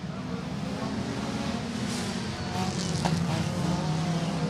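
Engines of a pack of front-wheel-drive dirt-track cars racing around the oval, a steady drone that drops slightly in pitch a little past halfway and grows louder toward the end.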